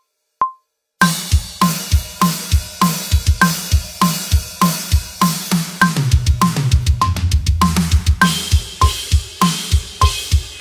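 Acoustic drum kit played to a metronome click at 100 beats per minute, with a single click before the drums come in about a second in. Kick, snare and cymbals keep a beat, and between about six and eight seconds in comes a two-over-two fraction fill. In it, right-left hand strokes on the drums alternate with right-left strokes on the double bass drum pedal, and then the beat returns.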